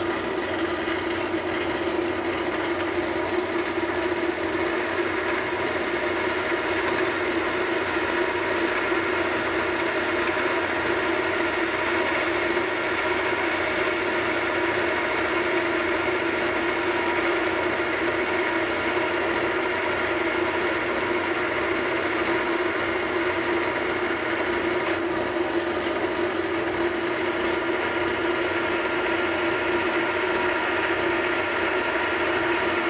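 Vertical metal-cutting bandsaw running with a fine-tooth bimetal blade cutting a slot in a hand-fed metal bar, a steady hum with a strong constant tone under the cut. The first cut is run without lubricant.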